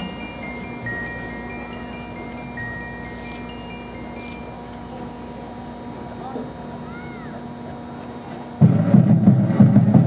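Marching band show music: mallet percussion plays sparse ringing, chime-like notes over a soft held tone. Then, about eight and a half seconds in, the full band comes in suddenly and loudly with drums.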